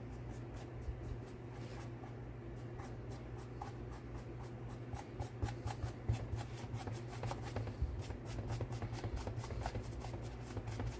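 Paintbrush bristles scrubbing in quick dry-brush strokes over textured paper-mache and cloth-mache scales, a scratchy rubbing of about three strokes a second that gets quicker and a little louder about halfway through.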